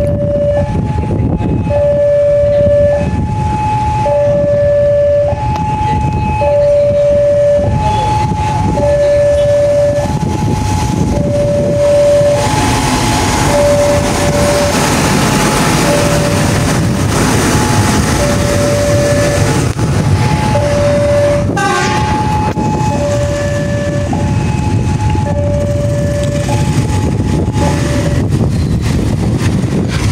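A railway level-crossing warning alarm sounds a steady two-tone ding-dong, low and high tones alternating about once a second. Under it, a rail vehicle (the track-measurement car being shunted) rumbles close by, loudest around the middle as it passes.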